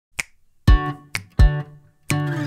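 Opening of an acoustic indie-folk song: sharp finger snaps alternating with acoustic guitar chords, each chord landing with a low thump — snap, chord, snap, chord.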